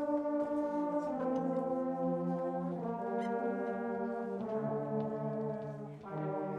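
A middle school concert band of woodwinds and brass playing slow, held chords that change every second or two. The low brass is prominent, and there is a short break just before the next chord near the end.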